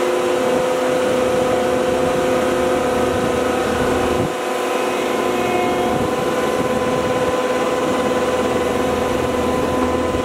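Diesel engine of a Cat 299D3 compact track loader running steadily, with a steady whine over the engine sound; the sound briefly dips about four seconds in.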